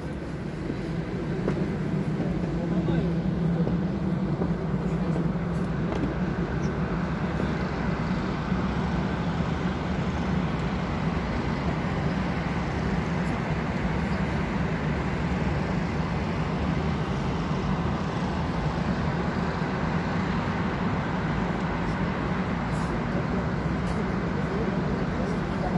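Steady drone of city traffic from the streets below, with a low, even hum.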